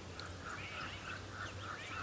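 Faint quick series of short, evenly spaced animal calls, about four a second, over a low steady background.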